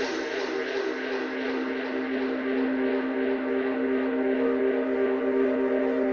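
Tech house breakdown: a sustained synth pad chord is held with no kick drum, slowly building in level.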